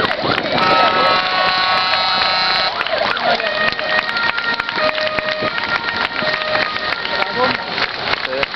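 Emergency trucks' horns sounding as they drive past: one long steady blast starting about half a second in and lasting about two seconds, then several shorter horn tones at different pitches, over crowd chatter.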